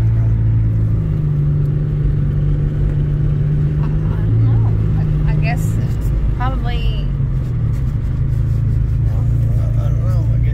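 Steady low drone of a Chevrolet Malibu's engine and tyres heard inside the cabin while driving along.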